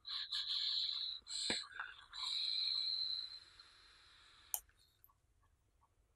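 Air drawn through a Vapor Giant V5S clone rebuildable drip-tank atomizer with its airflow fully open: a hissing, slightly whistling draw in three stretches over the first three and a half seconds, then a single click. The whistle comes from the unpolished edges of the airflow holes.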